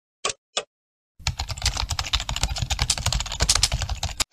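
Two sharp ticks of a countdown sound effect, then about three seconds of rapid computer-keyboard typing sound effect.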